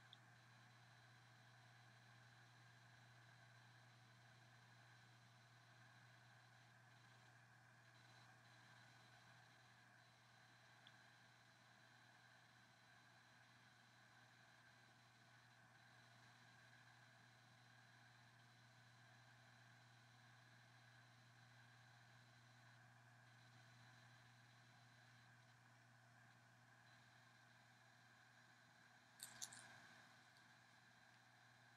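Near silence: room tone with a faint steady hum, a tiny click about eleven seconds in and a brief short noise near the end.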